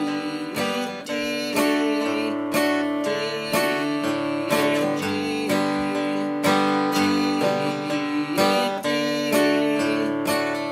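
Taylor acoustic guitar with a capo, played in a steady pick-and-strum pattern on a G chord and moving to a D chord near the end. A bass note or strong strum lands about once a second, with lighter strums between.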